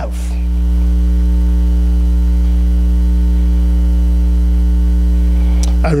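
Steady electrical mains hum in the sound system, a low drone with a faint buzz of overtones above it. It swells a little over the first second and then holds level.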